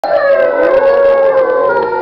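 Wolves howling together: several long, overlapping howls at different pitches, held and slowly gliding.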